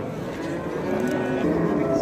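A cow mooing, in a steady held call, amid the faint murmur of people around.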